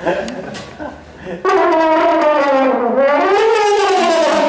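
French horn playing one long, loud note that starts about one and a half seconds in, sags in pitch and then swells back up. Before it comes a short stretch of a man's voice.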